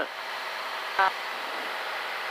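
Steady cabin noise of a Columbia 350 single-engine airplane in flight: engine, propeller and airflow heard as an even hiss through the headset intercom, with one brief vocal sound about a second in.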